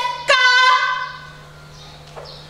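A woman singing long held notes as part of a Javanese geguritan recitation, with a brief break and then a second held note that fades out about a second in. A faint steady low hum remains afterwards.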